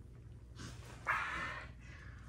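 A pet monkey lets out a single short cry about a second in, starting sharply and fading over about half a second.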